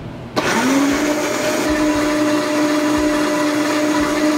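Countertop blender switching on about half a second in, its motor quickly spinning up with a rising whine and then running at a steady pitch as it purées a wet chermoula sauce of herbs, spices, olives, onion and lemon juice.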